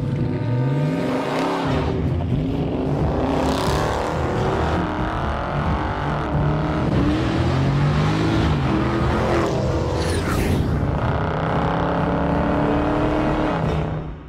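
Car engine sound: an engine revving up with a rising pitch in the first couple of seconds, then running hard at high revs. Two whooshes come through, at about four seconds and again at about ten, and the sound cuts off at the end.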